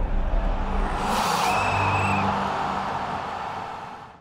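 Logo sting sound effect: a low boom, then a swelling whoosh with a brief high tone about a second and a half in, fading out toward the end.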